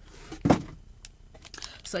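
A single short thump about half a second in as packages are handled, followed by a few faint clicks.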